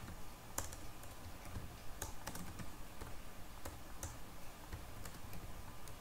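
Computer keyboard typing: irregular, scattered key clicks, some sharper than others, over a low steady hum.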